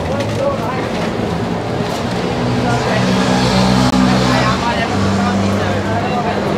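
City avenue traffic: a large motor vehicle's engine running low and steady, growing loudest about halfway through, under the talk of passing pedestrians.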